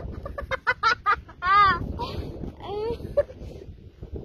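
An animal calling: a fast string of short clucking notes, then two longer calls that rise and fall in pitch.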